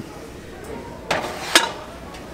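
A heavy cut-crystal glass piece being set down on a store shelf: two hard clinks about half a second apart, the second sharper and louder.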